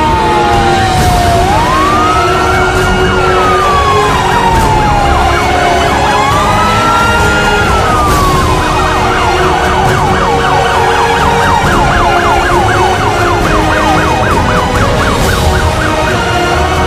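Police car siren wailing in slow rising and falling sweeps, then switching to a fast yelp about nine seconds in.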